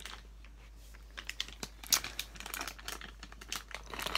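Plastic blind-bag toy packet crinkling as it is picked up and handled, with irregular crackles that grow busier from about a second in.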